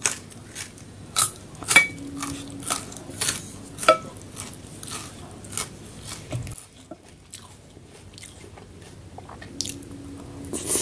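Close-miked eating sounds: biting and chewing with a quick run of sharp, wet mouth clicks and crunches over the first four seconds, then softer, sparser chewing.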